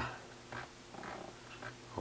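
Faint low steady hum in a pause between speech, with a couple of soft, breath-like noises.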